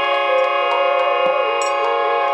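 Devotional kirtan music: a harmonium holding a sustained chord under a bamboo flute melody that wavers and slides, with a few scattered sharp ticks on top.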